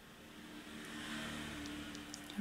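A faint steady mechanical hum with a low tone, swelling over about the first second and then holding.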